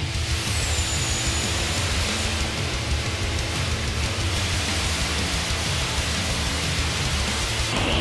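Steady rushing hiss of a dry abrasive-blasting nozzle firing Green Diamond grit at concrete, heard under background music.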